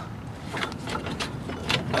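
A few faint clicks and knocks as a gloved hand works the serpentine belt off the pulleys in the wheel well, over a low steady rumble.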